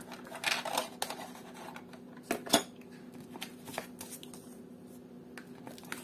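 Cardboard packaging and a paper leaflet being handled: scattered light rustles and taps, the loudest about two and a half seconds in, over a faint steady hum.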